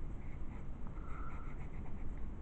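A pen scratching on paper in quick, short back-and-forth strokes as dark areas of a drawing are filled in.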